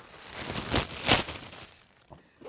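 Clear plastic bag crinkling as it is pulled open by hand, loudest just under a second and just over a second in, then fading.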